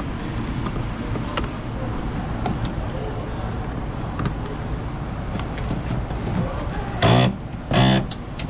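Faint clicks and rustles of gloved hands handling the door's wiring harness and plastic connectors, over a steady low background rumble. Two short loud bursts of voice come near the end.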